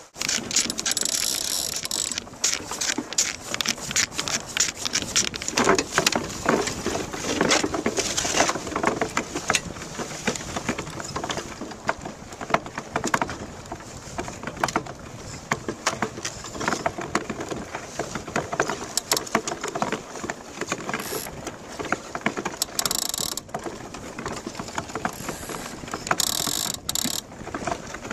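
DN iceboat's steel runners rattling and chattering over the ice, carried through the hull to a boat-mounted camera: a dense, unbroken clatter of clicks and knocks, with short bursts of hiss about a second in, around eight seconds, and near the end.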